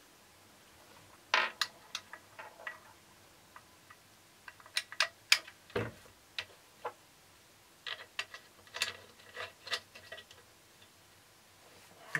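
Scattered clicks and knocks of hard parts being handled as the end piece is fitted and locked onto the metal rail of a friction camera slider, in three short bursts, with a duller thump about six seconds in.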